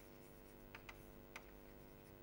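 Near silence: a few faint taps and scratches of chalk writing on a chalkboard, over a low steady hum.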